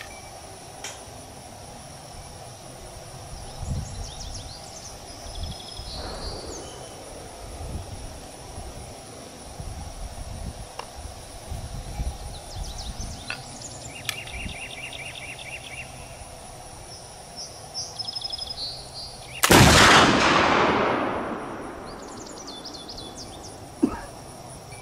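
Kibler Woodsrunner flintlock rifle firing a Goex black-powder charge: one loud report about three quarters of the way through, ringing out and fading over about two seconds. Birds chirp and insects buzz throughout, with a few light handling knocks before the shot.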